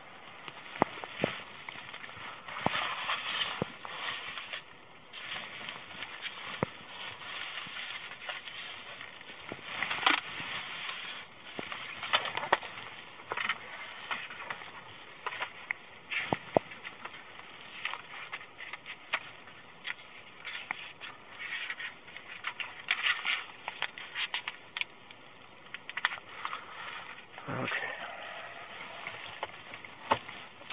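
Irregular rustling and sharp clicks of paper and clothing handled close to a body-worn camera's microphone, over a faint steady high tone.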